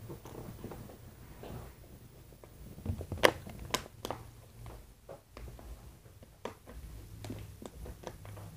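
Clear plastic water bottle handled and drunk from: a few sharp clicks and crackles of the plastic, grouped about three to four seconds in, with a couple more near the end.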